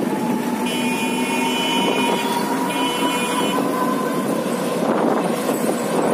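Auto-rickshaw running along a road, heard from the passenger seat: steady motor tone and road noise. A horn sounds twice in the first half, a longer blast and then a shorter one.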